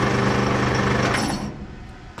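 Small electric motor of about 1 kW, fitted with a brake, driving the V-belt pulley and worm gear of a three-roll bending machine, running with a steady hum. It cuts out about one and a half seconds in and comes to a quick stop.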